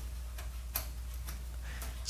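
An old multi-position rotary switch being turned by its knob, clicking faintly from one position to the next a few times.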